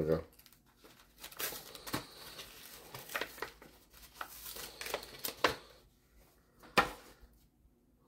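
A trading-card pack's plastic wrapper crinkling and tearing as it is opened by hand, with irregular sharp crackles; two louder snaps come near the end.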